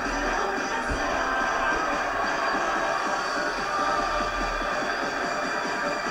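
Theme music of a TV show's opening sequence, playing steadily through a television set's speaker.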